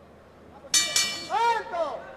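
Boxing ring bell struck about three-quarters of a second in, ringing and fading over about a second to signal the end of the round, with a man's voice calling out over it.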